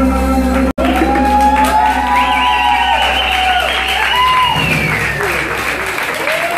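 The band's last chord is held and ringing, and cuts off suddenly under a second in. Then the audience cheers, with many voices calling out in rising and falling pitch over applause-like noise.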